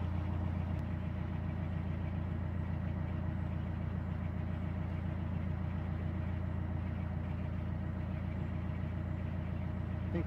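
Narrowboat's diesel engine running steadily at low revs as the boat cruises, an even low beat with no change in speed.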